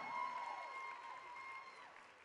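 Faint audience applause and cheering dying away, with a thin steady high tone running under it that stops near the end.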